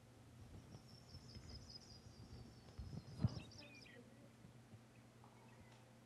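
Faint recording of a Sprague's pipit song played through a room's loudspeakers: a high, thin series of notes slowly falling in pitch over about three seconds. A single low thump comes about three seconds in.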